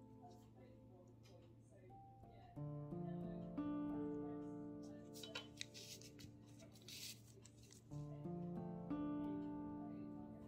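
Soft instrumental background music, a gentle tune of held notes that change every second or so.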